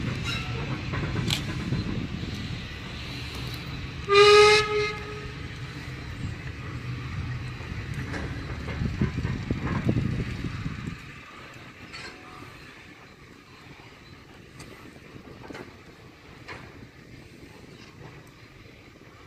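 A locomotive sounds one short, loud blast about four seconds in, over the low rumble of a working train that fades away at about eleven seconds.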